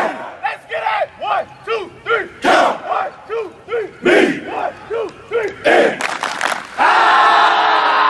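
Football players chanting together: short shouted calls in a steady beat, about two a second, then a long group yell near the end.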